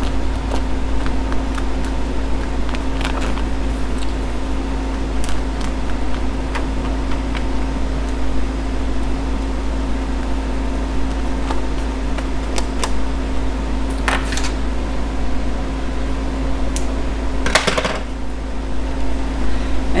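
A machine's steady hum, a low drone with a held tone over it. Light clicks and two short rustles, one about two-thirds of the way in and one near the end, come from a fabric cap being handled.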